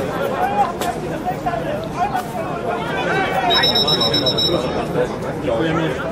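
Spectators talking among themselves by the pitch, with a steady high referee's whistle blast lasting just over a second, about three and a half seconds in.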